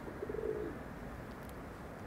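A pigeon cooing faintly once, a short low note about half a second in.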